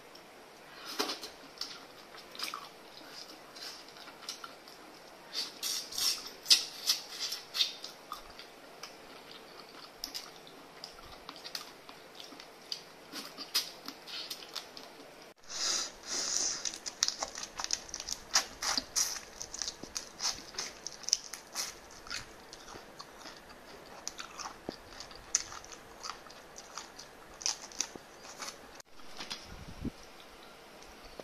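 Close-up eating sounds from cooked prawns and spiny lobster: shells cracking and being peeled by hand, with sucking and chewing, heard as a continuous run of sharp clicks and crunches.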